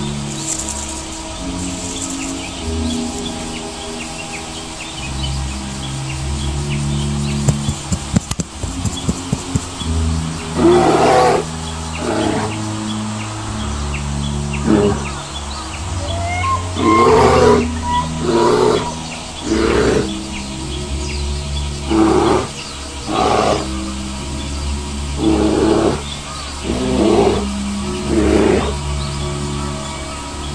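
Background music with bird chirps, then from about ten seconds in a series of about ten short animal roars, each lasting about a second.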